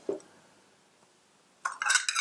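China plate and small bowl clinking as they are picked up and handled: one light clink at the start, then a quick cluster of clinks and rattles near the end.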